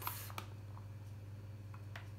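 Grated cheese picked from a plastic tub and sprinkled by hand onto pasta in a ceramic dish: a few faint light clicks and rustles over a steady low hum.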